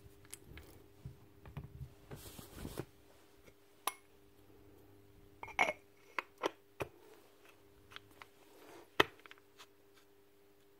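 Metal parts of a cordless impact wrench's hammer and gear assembly being handled and fitted into the housing: scattered light clicks and knocks, a brief rustling scrape a couple of seconds in, and the sharpest knock about nine seconds in.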